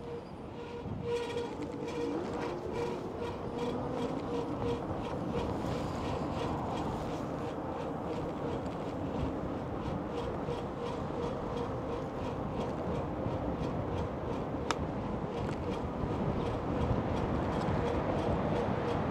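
Riding an e-bike on city streets: a steady rumble of road and wind noise with passing traffic, a faint steady hum, and a rapid light ticking. A single sharp click comes about three-quarters of the way through.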